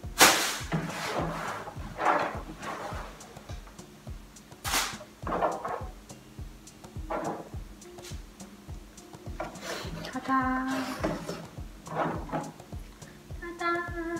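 Scattered knocks and handling noises as pumpkin pulp and seeds are pulled apart by hand and dropped into a bowl. The sharpest knocks come just after the start and about five seconds in.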